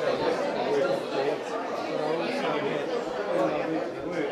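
Crowd chatter: many people talking at once in a large hall, their voices overlapping into a steady murmur.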